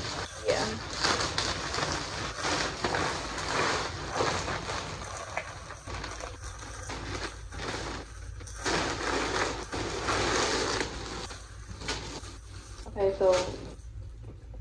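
Plastic poly mailer bag rustling and crinkling in irregular spells as clothes in plastic wrappers are rummaged out of it.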